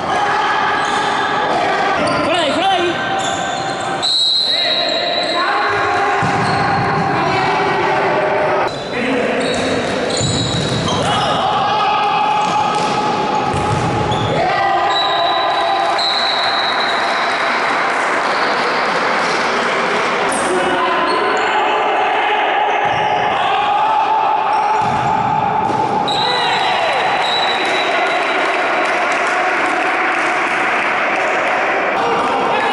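Futsal game sounds in a large sports hall: players' indistinct shouts and calls, with the ball being struck and bouncing on the court, all echoing in the hall.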